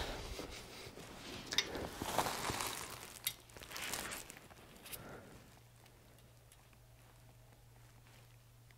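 Rustling and handling noise from gloved hands and a shop towel as a telescoping gauge is worked into an engine cylinder bore, with a few small metal clicks. After about five seconds it goes quiet except for a faint low hum.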